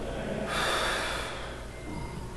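A person breathing out sharply once, a short rush of air about half a second in that lasts under a second.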